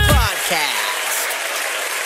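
The outro music slides down in pitch and dies away in the first moments, giving way to steady applause.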